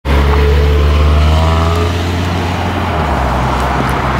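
A Honda CR-V's engine running as the SUV pulls away, with a slowly rising tone over the first two seconds; its low hum eases after about three seconds.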